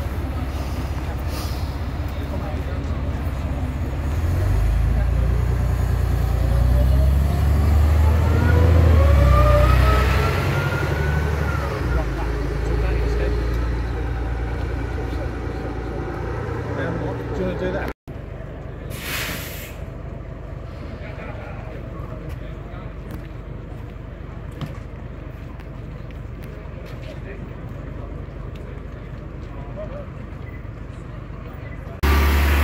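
Double-decker bus engine pulling away, its rumble growing louder with a whine rising in pitch as it gathers speed, then falling away. Later a bus engine runs steadily, with a short hiss of air about two-thirds of the way in, like an air brake.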